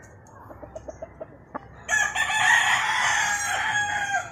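A rooster crows once: a single long, fairly level call of about two seconds beginning about halfway in, after a quiet stretch with a few faint clicks.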